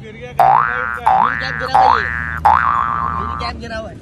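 Cartoon 'boing' sound effect played four times in quick succession, each a springy rising twang, the last one ending in a wobble, over a low steady hum.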